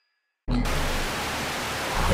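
Dead silence, then about half a second in a sudden loud burst of TV-style static hiss that runs on steadily, with a low hum underneath.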